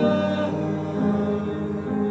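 Mixed-voice vocal ensemble singing sustained chords in close harmony, with the chord shifting about once a second.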